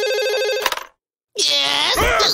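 A telephone rings with a steady, rapidly trilling electronic ring and stops abruptly about two-thirds of a second in. After a brief silence, a man's voice groans or exclaims with wavering pitch.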